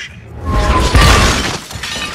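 A loud crash with glass shattering, swelling about half a second in and dying away before the end, over film score music.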